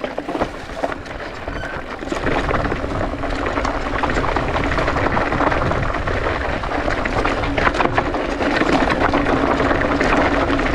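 Mountain bike riding over a rocky dirt trail: tyres crunching over gravel and stones with frequent rattles and knocks, under wind rumble on the microphone. A steady hum sets in about two seconds in, and the sound grows louder as the bike picks up speed.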